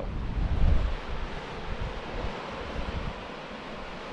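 Wind blowing across the microphone, with heavy low gusts in the first second or two that ease to a steadier, quieter rush.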